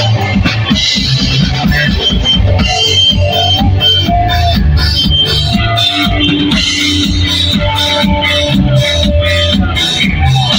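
Punk band playing live: electric guitars and a drum kit, loud and continuous, with a few held notes in the middle of the passage.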